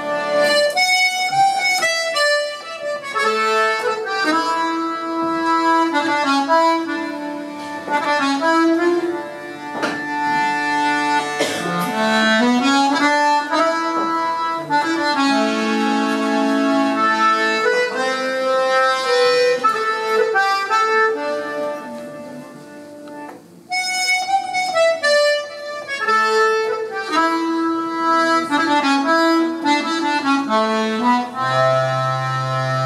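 Button accordion playing a slow lament, long held melody notes over chords, dropping to a soft passage about three quarters of the way through before coming back in full.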